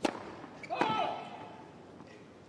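Tennis serve: a sharp crack of the racket striking the ball, then about 0.8 s later a second hit with a short shouted cry over the arena's background hum.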